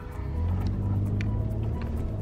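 A 4x4's engine running under load while driving over sand dunes, heard from inside the cabin as a steady low hum that grows louder just after the start, with music playing over it.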